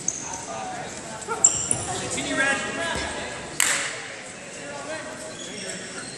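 Wrestling shoes squeaking briefly on the mat during a freestyle bout, with one sharp slap about three and a half seconds in, against voices echoing in a large hall.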